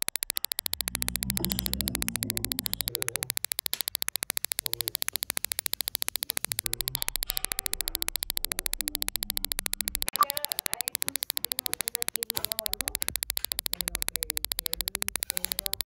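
Steady electronic static buzz: a rapid, even crackle of many clicks a second at a constant level, with faint low murmuring beneath it in places.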